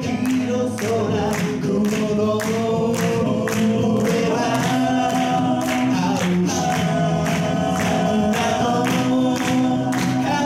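A male a cappella group singing held chords into microphones over a steady percussive beat of about two hits a second.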